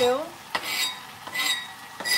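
A knife scraping chopped onion off a cutting board into a frying pan: two short metallic scraping, clinking strokes about a second apart.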